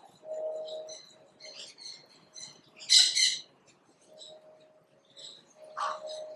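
Small birds chirping in an aviary: scattered short high chirps, with one loud burst of chirps about halfway through and a lower held call near the start and again near the end.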